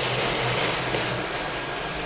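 Steady hiss-like background noise, easing slightly in level, with no clear source.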